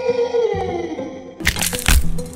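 Background music with a beat, under a long held tone that slowly falls in pitch. About a second and a half in comes a short burst of dry crackling crunches: a block of uncooked instant noodles being broken apart by hand.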